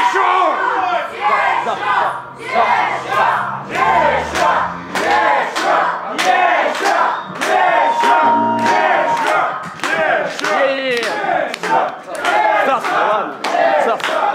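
A crowd of voices shouting and chanting loudly, with sharp regular hits about twice a second running under it. One voice holds a long steady note about eight seconds in.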